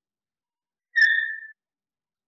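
Chalk squeaking on a blackboard while a circle is drawn: one short, high-pitched squeal about a second in, lasting about half a second.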